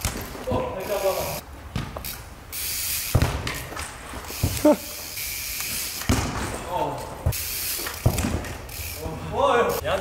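Trial bike and football on an indoor artificial-turf pitch: a few sharp thuds as the bike's wheels land and the ball is struck into the goal, with short voices between them, in a large hall.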